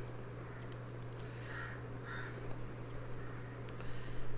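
Two short, harsh bird calls about half a second apart, faint in the background, over a steady low hum.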